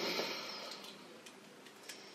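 Clear adhesive second-skin tattoo bandage being peeled off skin: a short faint rasp at the start, then a few faint scattered ticks and crackles.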